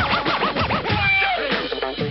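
Old-school hip hop track with turntable scratching over the beat: a quick run of rising-and-falling scratches in the first second, then one long falling scratch.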